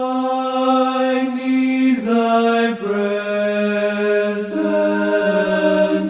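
Slow hymn music in sustained, choir-like chords with no words heard, the harmony moving to a new chord every second or two.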